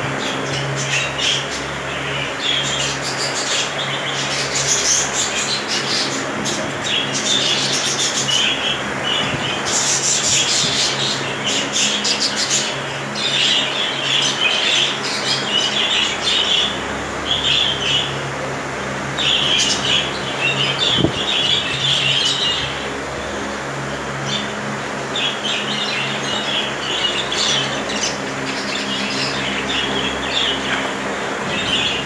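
Many caged budgerigars chattering and chirping at once, a continuous overlapping mix of warbles and squawks. A steady low hum runs underneath.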